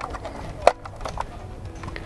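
A sharp plastic click, then a few lighter clicks, as a three-pin plug is pushed into a weatherproof wall socket.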